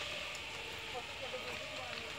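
Steady hiss of a house's roof burning in an open fire, with faint voices talking in the distance.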